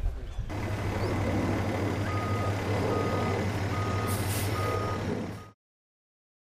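Vehicle's reversing alarm beeping at a steady pitch, about one beep every 0.8 s, over a steady low engine hum. The sound cuts off abruptly near the end.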